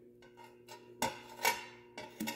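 Stick-welding electrode being tapped and scratched against the workpiece to strike an arc, with the arc failing to catch: a few faint ticks, then sharp short crackling strikes about a second in and again half a second later. A steady low hum from the stick welder runs underneath.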